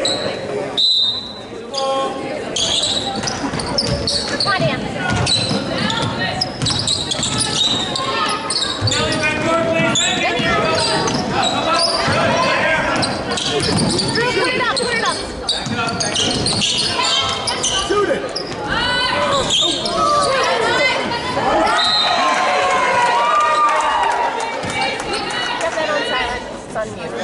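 Basketball game sounds in an echoing gym: a ball dribbling on the hardwood court, with players and spectators calling out over it. A short shrill tone about a second in fits a referee's whistle.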